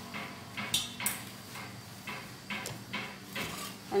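Chopped garlic being gathered by hand and dropped into a stainless steel pot: a string of light taps and clinks against the metal, the sharpest two about a second in, then smaller ones.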